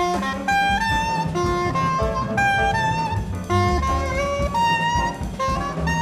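Jazz ensemble playing live: a soprano saxophone melody in short stepped phrases over double bass and drums.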